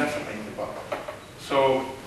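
A person speaking in short phrases with pauses; the words are not clear enough to make out.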